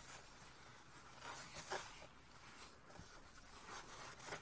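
Faint rubbing and scuffing of a cloth rag being wiped along a pair of twisted wires, a few soft strokes over near silence.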